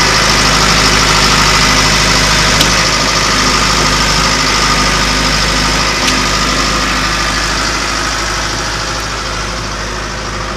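The diesel engine of a John Deere 550J LT crawler dozer idling steadily, with two brief clicks, one a few seconds in and one about halfway; it grows slightly fainter near the end.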